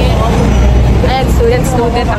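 A woman talking over a steady low rumble of city street noise.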